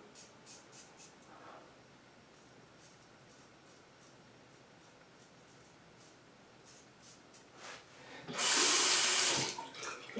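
A few faint short scrapes of a Gem Jr single-edge safety razor on stubble in the first second or so, then quiet. Near the end a sink tap runs briefly, for about a second, much louder than the rest.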